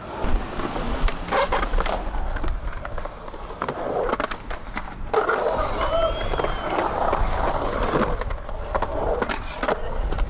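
Skateboard wheels rolling on the concrete of a skatepark bowl, a steady low rumble, with several sharp clacks of the board and trucks along the way.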